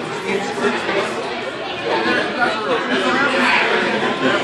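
Background chatter of many voices talking at once in a large gym.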